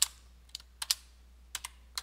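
Computer keyboard typing: about half a dozen separate keystrokes at uneven spacing.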